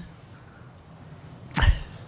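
Quiet room tone in a pause, then about one and a half seconds in a single short, sharp thump.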